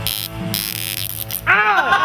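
A loud, steady electric buzz from a small handheld gadget for about a second and a half, followed near the end by a burst of laughter.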